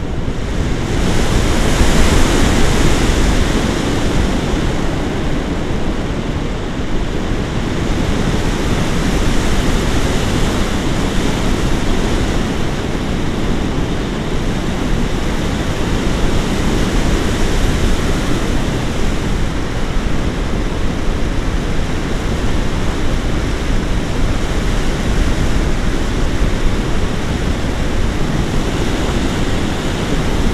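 Steady rush of airflow over an action camera's microphone in tandem paraglider flight, a little louder about two seconds in.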